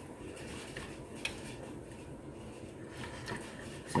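Silicone spatula stirring cocoa powder and water in a small metal saucepan, a soft scraping against the pan with a couple of light taps about a second in, as the lumps are worked out.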